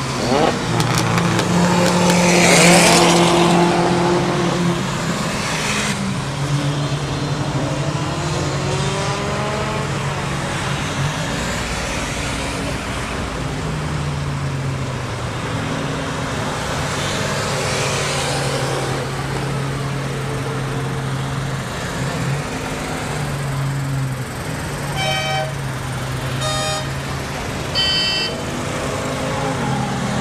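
Classic cars' engines idling in a long queue, while other cars pass at speed on the track with rising and falling engine noise, loudest a couple of seconds in and again a little past halfway. Near the end come several short car-horn toots.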